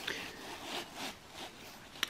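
Faint rustling and rubbing of coated polyester bag fabric and webbing strap being handled, with a few soft bumps.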